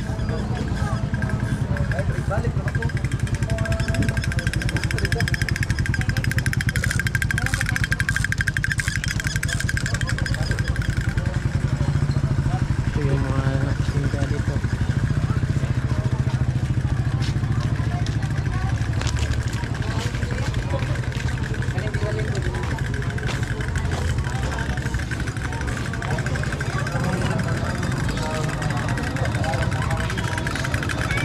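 A small engine running steadily, a low continuous rumble, under the chatter of people in the street.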